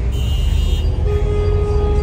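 Low rumble of car and truck engines creeping past in slow traffic, with a car horn sounding one held note starting about halfway through.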